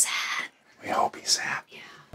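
Speech only: a woman saying a short phrase in a hushed, whispery voice.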